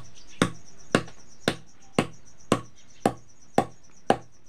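Hand-held grinding stone striking hard hog plums (amda) on a stone sil slab: sharp, evenly spaced knocks about twice a second, eight strokes in all. The fruit is too hard to cut, so it is being smashed into pieces with the stone.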